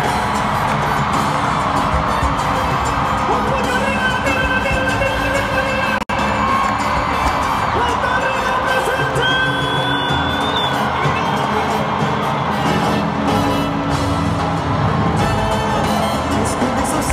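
Live salsa band playing, with the crowd cheering and shouting over it. The sound cuts out for an instant about six seconds in.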